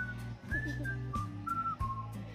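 Background music: a simple tune of clear, whistle-like single notes stepping from pitch to pitch over a low bass line.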